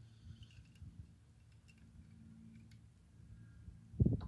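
Near silence: a faint steady low hum with a few faint scattered clicks.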